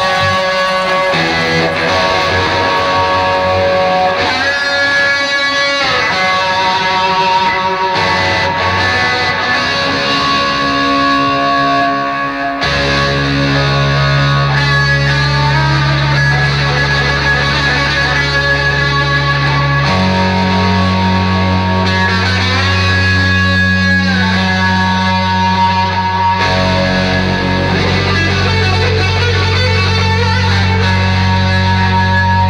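Fender Stratocaster electric guitar playing a slow, unaccompanied lead intro: long held notes with string bends. About twelve seconds in, sustained low notes come in underneath, changing pitch twice.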